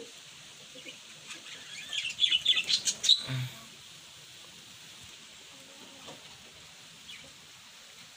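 Small birds chirping: a quick run of short, shrill chirps about two seconds in, lasting around a second and a half.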